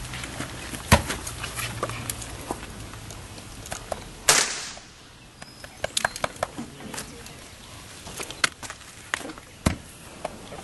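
A single gunshot about four seconds in: a sharp crack with a short echoing tail. Scattered knocks and clicks surround it, the loudest a brief knock about a second in.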